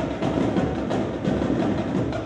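Marching drumline of snare and bass drums playing a rapid, steady cadence, with sharp stick and rim strikes.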